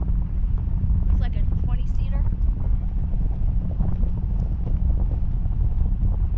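Wind buffeting an action camera's microphone in flight on a parasail, a steady low rumble, with faint bits of a voice a second or two in.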